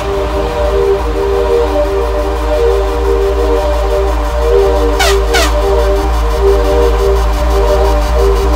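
Dark electronic breakcore/darkstep track: held synth chords over an evenly pulsing sub-bass, with two quick falling sweeps about five seconds in.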